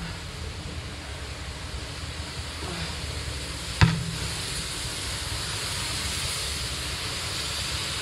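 Steady hiss of rain falling on paving, with one sharp thump of a football a little before halfway.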